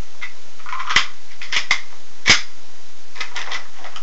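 Sharp plastic clicks and a brief rustle of nylon as the thumb quick-release buckle on a drop leg holster is popped and an airsoft pistol is drawn out. The clicks are scattered, a cluster of them near the end, and the loudest comes a little past two seconds in.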